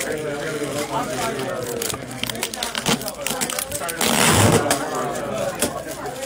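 Many people talking at once in a room, with a brief rustle about four seconds in.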